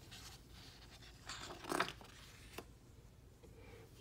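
A page of a picture book being turned by hand: a brief paper rustle about halfway through, followed by a small tap.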